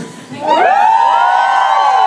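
Concert audience cheering and screaming. Many high voices rise together about half a second in and are held at nearly one pitch.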